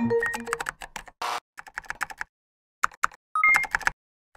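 Computer keyboard typing sound effect: irregular runs of key clicks in several bursts with silent pauses between them. The tail of a music sting fades out in the first half-second, and a short two-note rising blip sounds near the end.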